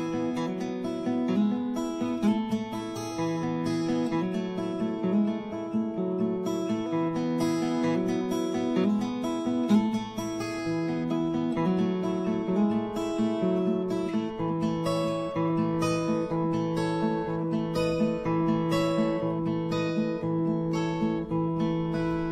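Solo acoustic guitar playing a steady, repeating pattern of plucked chords and single notes: the instrumental intro of a folk song, before the singing comes in.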